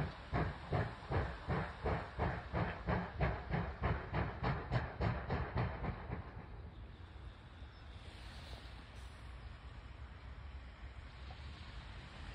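Distant steam locomotive working, its exhaust beats coming about three chuffs a second. The chuffing fades out about six seconds in, leaving a steady low hiss.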